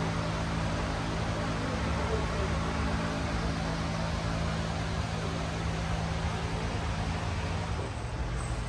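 An electric fan running steadily: an even rushing noise with a low, constant hum underneath, the hum dropping out near the end.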